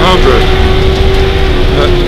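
1973 Ford Mustang rally car's engine, heard from inside the cabin, running at steady revs with its note easing slightly lower, over low road rumble.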